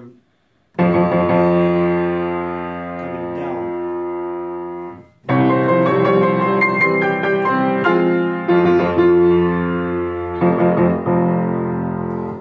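Piano played forte: a loud chord struck about a second in, held and dying away for about four seconds, then a dense passage of strong chords and octaves with fresh accents toward the end.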